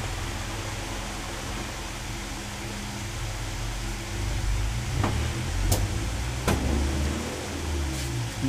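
Low background rumble and hum that swells from about four seconds in and fades near the end, with three faint clicks in the middle.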